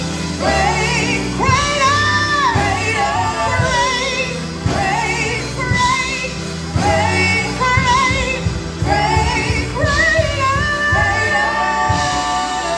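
Church praise team of several singers performing a gospel worship song into microphones, voices holding long notes with vibrato in phrases, over keyboard accompaniment with a bass line.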